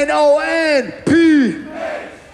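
A man's drawn-out shouts into a microphone over a PA, two long wordless yells that fall in pitch, the second about a second in, with crowd noise beneath and no beat.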